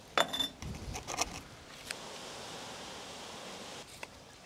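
A few short scrapes and light taps as a brick is pressed and settled into wet cement mortar by gloved hands, in the first second and a half. This is followed by a steady faint hiss of background noise that cuts off near the end.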